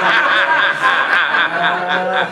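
Laughter: a woman laughing heartily, with other people in the room laughing along, in quick overlapping pulses.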